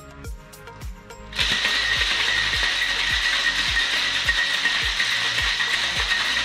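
Stainless steel cocktail shaker being shaken hard: a loud, dense, continuous rattle that starts abruptly about a second and a half in, over background music with a steady beat of about two a second.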